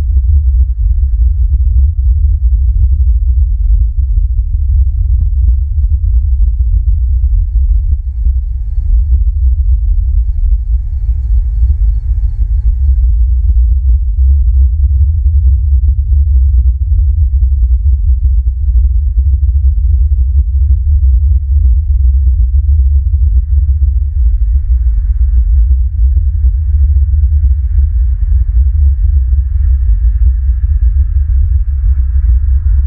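Wind buffeting the outdoor nest camera's microphone: a loud, steady low rumble that flutters throughout. Faint distant tones come in partway through.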